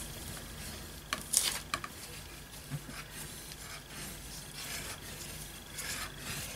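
Bone folder rubbed over freshly glued paper on a large card tag, pressing it flat. It makes a faint, dry rubbing, with a few brief scratchy strokes a little over a second in.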